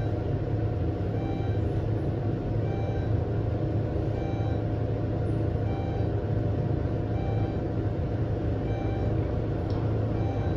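Westinghouse traction elevator, modernized by Schindler, heard from inside the cab as it climbs steadily between floors: an even low hum and rumble of car travel.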